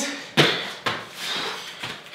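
Two sharp thuds about half a second apart as feet land a forward hop on a rubber gym floor mat and the body drops down onto the hands into a bear-crawl position.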